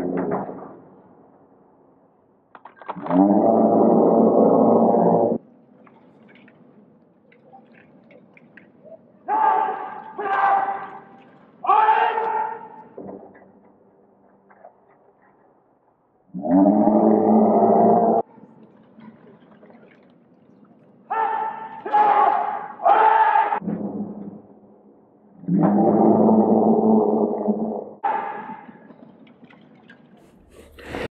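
Men's shouted kiai from a sword-against-jingasa martial arts bout. There are three long, drawn-out shouts of about two seconds each, and between them shorter sharp shouts in quick runs of two or three.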